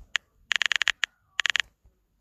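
Smartphone on-screen keyboard tap sounds, short identical ringing clicks as the backspace key deletes text: one click, a quick run of about eight, a single click, then a run of about five.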